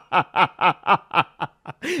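A man laughing in a steady run of short pitched 'ha' pulses, about four a second, that stops about a second and a half in; a spoken word follows near the end.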